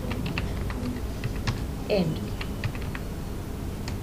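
Computer keyboard being typed on: a run of irregularly spaced key clicks as a line of code is entered.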